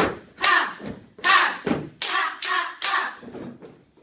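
A step team's hand claps and foot stomps on a wooden floor, sharp strikes in an uneven rhythm, about seven in four seconds.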